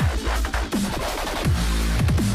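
Electronic dance music from a live DJ set played loud through a sound system, with a heavy bass line and a falling bass sweep that repeats about every three quarters of a second.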